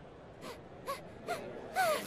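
A person's voice giving four short wailing cries, each louder than the last.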